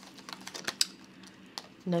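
Clear plastic binder envelopes and paper bills being handled: light rustling with scattered sharp clicks and taps, the loudest a little under a second in.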